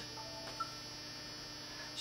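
Steady electrical hum made up of several constant tones, with no other event standing out.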